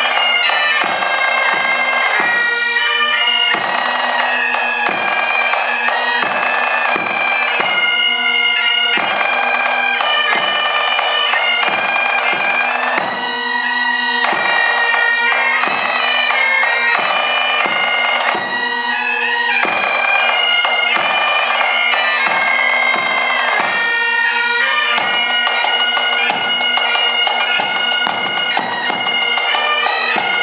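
Pipe band playing: Great Highland bagpipes carry a melody over their steady drones, with a bass drum beating in time.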